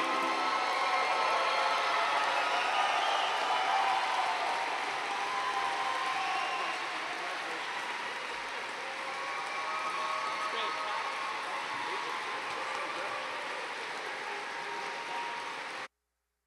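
Audience applauding, with shouts and voices mixed in, slowly dying down, then cut off abruptly near the end.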